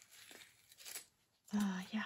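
A paper sticker sheet rustling and crinkling as it is handled, with a brighter crinkle about a second in. A short voiced sound follows near the end.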